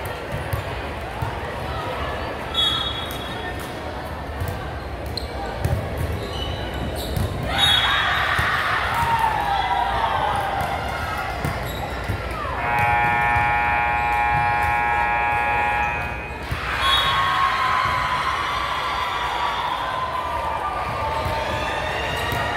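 Gym noise in a large hardwood-floored hall: balls bouncing on the floor and many voices chattering. Just over halfway through, an electronic scoreboard buzzer sounds one steady tone for about three and a half seconds.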